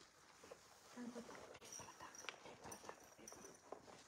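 Near silence: quiet room tone with faint scattered clicks and rustles, and a brief faint murmur of a voice about a second in.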